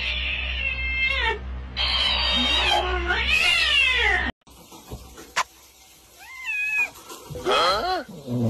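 Cat meowing and yowling, loud and continuous for about four seconds before cutting off suddenly. After that comes a quieter stretch with a single wavering meow, then another rising cry near the end.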